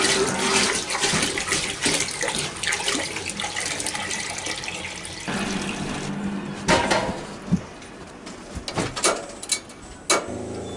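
Water pouring and splashing into a large stainless stockpot for about five seconds, then a metallic knock as the pot is set onto a propane camp stove, followed by a few sharp clicks as the stove knob is turned.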